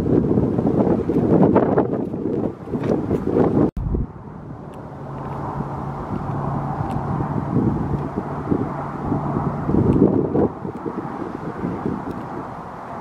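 Wind buffeting an outdoor camera microphone in gusts, cut off sharply about four seconds in. After that comes a steadier hiss with a low steady hum, then another gust near the end.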